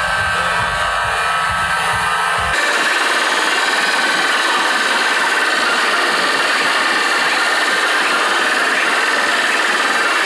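Giant DJ truck speaker stacks blasting at full power, so overloaded in the recording that they come through as a harsh, distorted noise rather than clear music. About two and a half seconds in, the deep bass cuts out abruptly, leaving a steady, bright, harsh noise.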